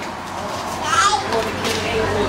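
Indistinct background voices, including children's voices and chatter, with a short burst of speech about a second in.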